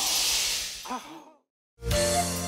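A long, breathy sigh that fades out within about a second and a half. Near the end, after a moment of silence, music starts.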